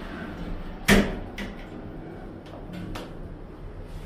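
OTIS 2000 hydraulic lift car doors sliding shut and closing with a loud thud about a second in, followed by a few lighter clicks.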